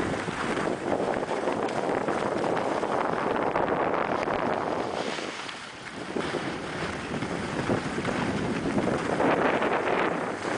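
Skis hissing and scraping over packed, groomed snow on a downhill run, mixed with wind on the microphone. The noise eases briefly about halfway through, then picks up again.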